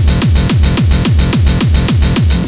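Electronic dance track: a fast, driving kick drum, each hit dropping in pitch, repeating evenly under dense synth layers.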